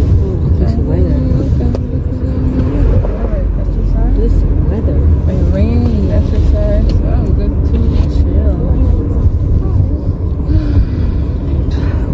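Steady low rumble of a car's engine and road noise heard from inside the cabin while driving, with a voice over it at times.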